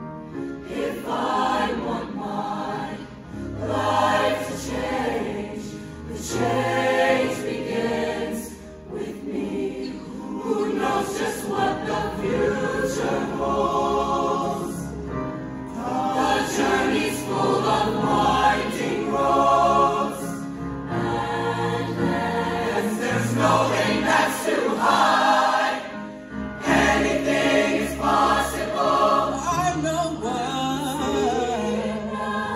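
A high-school show choir of mixed male and female voices singing together in harmony to music, the phrases swelling and easing with short breaks between them.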